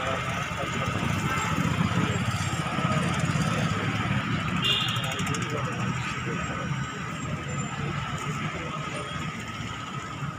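City street traffic: motorcycles and cars passing, with people's voices around.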